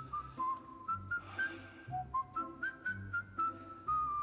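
Background score: a whistled melody of held notes that step up and down, over a soft low accompaniment.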